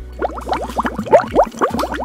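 Liquid gurgling as a drink is sipped from a mug: a quick run of about a dozen short, rising, bubbly gurgles, loudest a little past the middle.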